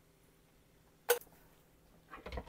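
A single short clink about a second in, from kitchen utensils being handled at the blender cup; otherwise quiet room tone with a faint steady hum.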